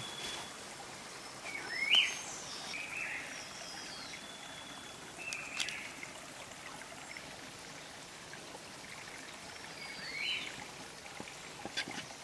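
A bird calling in the forest: four short calls that rise in pitch, the loudest about two seconds in. Behind them is a steady hiss like running water.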